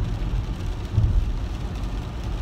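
Low road and tyre rumble inside a moving car's cabin, with a brief heavier bump about a second in.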